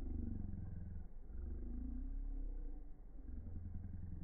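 Low, uneven rumble of wind buffeting the microphone outdoors, with no distinct event.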